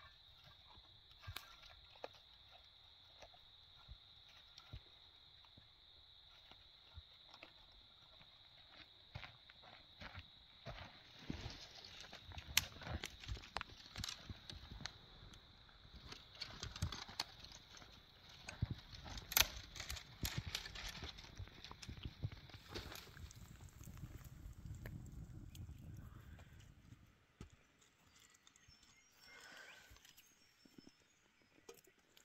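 Twigs and kindling snapping and crackling as a small campfire is lit and fed, the clicks thickest in the middle, over a steady high-pitched drone that stops about two-thirds of the way through.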